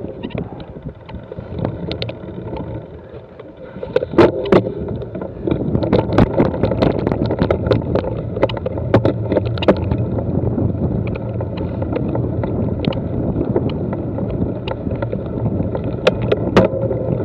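A bike rolling fast over a rough grassy track, heard from a camera mounted on it: steady tyre and riding noise with frequent rattles, clicks and knocks from the bumps. The rattling grows louder and busier from about four seconds in.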